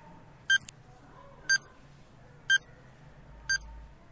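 Countdown timer sound effect: short electronic beeps, one a second, four times.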